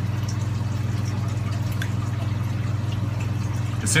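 Steady low hum from running aquarium equipment, with a fast fine buzz in it. A few faint light clicks come from the small test vial and syringe being handled.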